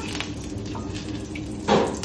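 Metal tongs scraping on a flat-top griddle and clinking against a stainless steel bowl as cooked food is lifted into it, with a louder burst near the end, over a steady low kitchen hum.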